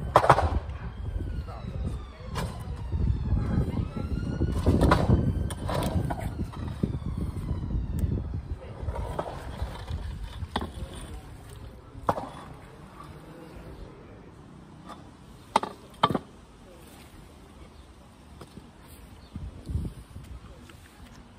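A metal scaffold tube on a magnet being hauled out of the canal and over the concrete edge: a loud stretch of scraping and splashing for the first eight seconds or so, then a few separate clanks of metal on the edge, two of them close together.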